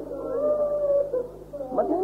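A long, wavering wail from a mourner weeping aloud at the recital of the tragedy of Karbala, held for about a second and then fading. It sits over the steady hum of an old tape recording.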